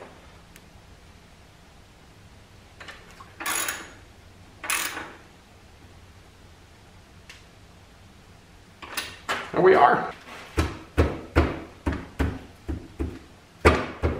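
Hand tools working the steel crash bar's mounting bolts on a motorcycle as they are tightened: a few separate metal clicks and knocks about three to five seconds in, then a quick run of clinks and knocks over the last five seconds.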